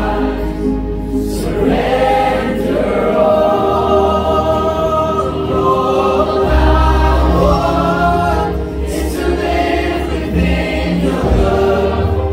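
Live contemporary worship band: several voices singing together in harmony over strummed acoustic guitar and electric bass.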